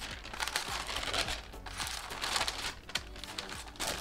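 Tissue paper rustling and crinkling in an irregular run of small crackles as it is folded back from inside a gift box.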